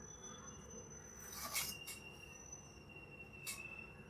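Quiet pause with a thin, steady high-pitched tone in the background and two soft, brief scratches of a pen on paper, about one and a half seconds in and again near the end.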